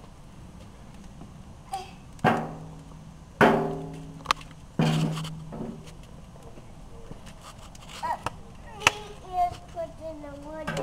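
Metal struck three times with a stick of firewood, each knock ringing with a steady low hum that fades within a second, plus a couple of sharper clicks of wood.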